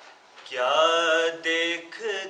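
A man reciting a devotional salam in a chanting, sung voice, with no instrument heard. After a brief pause for breath at the start, he comes in about half a second in on a note that slides up and is then held.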